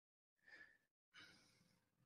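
Near silence, with two faint breaths, a short one about half a second in and a longer one from about a second in.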